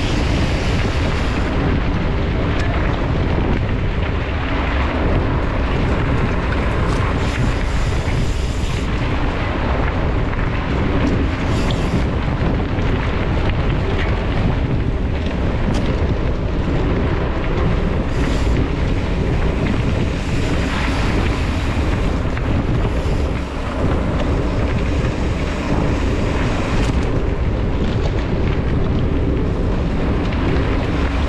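Wind rumbling loudly and steadily on the microphone of a camera mounted on a mountain bike ridden fast along a dirt forest trail, with the bike rattling over the ground and a few sharp knocks from bumps.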